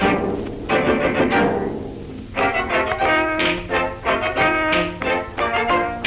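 Early cartoon orchestral score: bowed strings and timpani playing short, choppy phrases, with a sudden loud accent right at the start and a brief lull about two seconds in.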